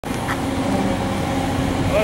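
Steady low mechanical hum over a constant rushing background noise, with faint voices near the end.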